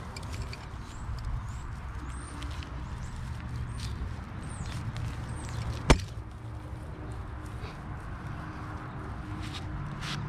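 Dry straw rustling and crackling as hands dig into and pull at the side of a straw bale, with one sharp click about six seconds in.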